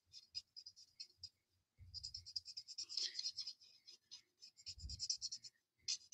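Felt tip of an alcohol marker (the Stampin' Blends color lifter) being stroked quickly back and forth over cardstock, a faint, rapid scratching. It is blending out and lightening freshly laid grey shading. The strokes come sparsely at first and grow busier after about two seconds.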